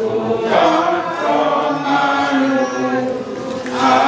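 Voices singing together in a slow, chant-like song with long held notes.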